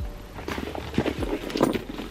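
A Loungefly mini backpack being handled and turned: a few irregular soft knocks and rustles from the bag and its metal hardware.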